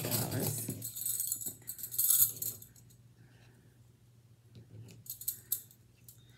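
Metal bangle bracelets clinking and jangling against each other as they are picked up and handled together, loudest about two seconds in, followed by a few lighter separate clinks near the end.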